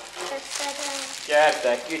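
Short spoken voices that the transcript did not catch, loudest a little past the middle, over a steady background hiss.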